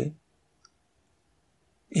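Near silence in a pause of speech, broken by one faint, short click a little over half a second in.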